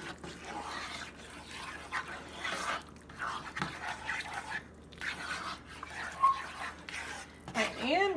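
Plastic spatula stirring a thick, wet filling of diced vegetables and cream of chicken soup in a nonstick skillet: irregular wet stirring sounds and soft scrapes against the pan. A voice comes in near the end.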